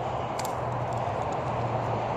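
Steady traffic noise from an interstate highway: a continuous low hum under an even wash of road noise.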